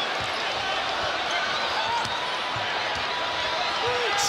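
A basketball being dribbled on a hardwood court, a handful of irregular bounces, over the steady noise of an arena crowd.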